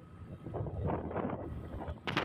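Road and vehicle noise from a moving vehicle, with wind buffeting the microphone: a low rumble that swells about half a second in.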